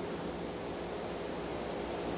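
Steady, even hiss with a faint low hum on a video-call audio feed, no speech coming through, while the connection is breaking up.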